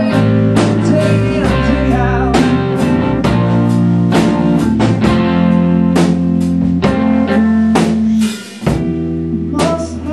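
Live rock band playing an instrumental passage: electric guitar and bass held over a drum kit, with a short dip in the sound near the end.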